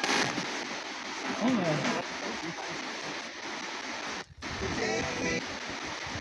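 Spirit box (S-box ghost scanner), a radio sweeping rapidly through stations: a steady hiss of static broken by brief snatches of voices, with a short dropout about four seconds in.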